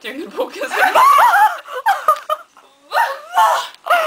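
A woman laughing while she talks, giggling through her words.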